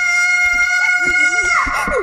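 A cartoon child's long, high scream held on one pitch, which breaks off and drops about one and a half seconds in, with a lower wavering voice coming in beneath it near the middle.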